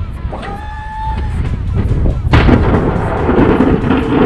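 Steel blade of a Boss DXT V-plow on a pickup truck scraping along snowy pavement. The scraping starts suddenly a little past halfway through and stays loud.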